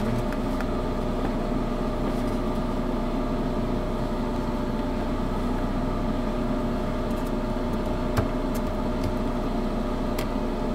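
Steady machine hum, a motor running at a constant pitch, with a single sharp click about eight seconds in.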